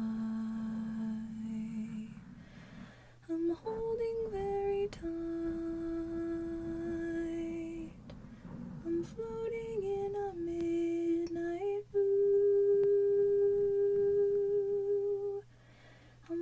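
A woman humming a slow melody softly and close to the microphone, in long held notes. In the short gaps between phrases, fingers brush the foam microphone cover.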